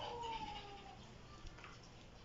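A brief falling vocal sound, like a whimper or drawn-out hum, lasting under a second, then faint quiet with a small tick.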